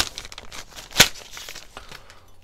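Clear plastic packaging bag crinkling and rustling as an aluminium bracket is pulled out of it, with one sharp crack about a second in.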